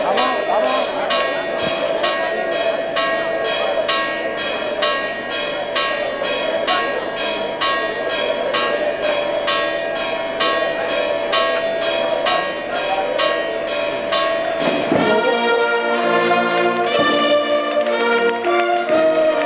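Church bells ringing in quick, even strokes, about two or three a second, over a murmuring crowd. About fifteen seconds in, a brass band strikes up a march and the bell strokes give way to it.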